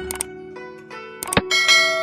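Plucked zither background music, with sharp mouse-click sound effects just after the start and again past the middle. A bright bell chime follows near the end and is the loudest sound.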